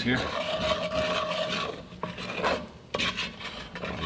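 A spatula stirring dry oven-browned flour into oil in an enamelled cast-iron Dutch oven, scraping steadily around the bottom of the pot in uneven strokes as the roux is mixed.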